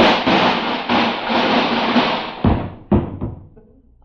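Radio sound effect of a man falling to the floor as he sits down on a chair that is not there: a sudden clattering crash lasting a couple of seconds, then two heavy thuds.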